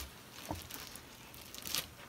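Faint rustling, with a soft knock about half a second in and a brief louder rustle near the end.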